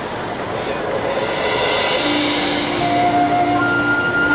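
Marching band in a quiet passage of its field show: a hissing wash of sound swells and fades, and about halfway through long held single notes enter one after another, first a low one, then higher ones.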